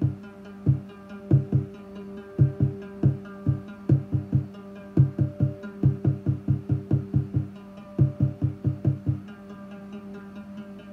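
Eurorack modular synthesizer patch playing short plucky bass notes in an irregular, stop-start rhythm, triggered at random by a EuroPi module's coin-toss script, over a steady sustained tone. The notes come in runs of about five a second, with short gaps between the runs.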